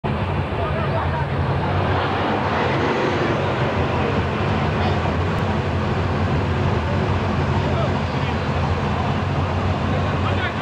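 Car engines idling steadily with a low, even rumble, under a dense background of crowd voices.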